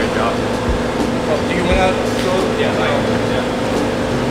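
Steady mechanical hum of building ventilation, with brief, indistinct talk over it.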